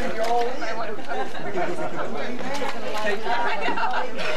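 Several people talking at once: overlapping, indistinct conversation with no single clear voice.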